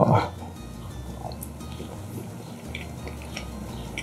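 A short "oh" from a man's voice at the start, then a few faint clicks of a knife and fork against a plate as a bite of enchilada is cut and lifted.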